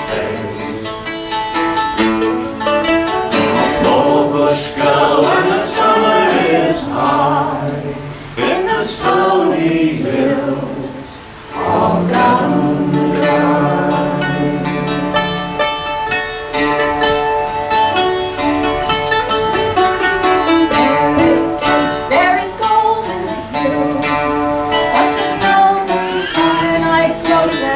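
Live acoustic folk song: a woman and a man singing together to mandolin and acoustic guitar accompaniment, with a brief lull in the playing about halfway through.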